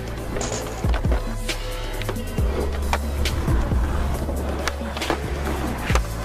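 Skateboard wheels rolling on concrete, with several sharp clacks and knocks of the board, over backing music.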